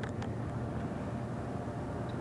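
Steady low background hum with an even hiss underneath, and two faint ticks right at the start.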